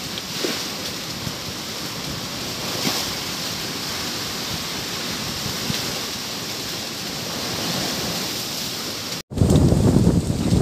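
Steady rushing wind noise outdoors. About nine seconds in, after a brief cut, wind buffets the microphone in a louder, low rumble.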